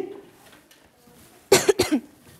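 A woman coughing twice into a handheld microphone, two short sharp bursts near the end.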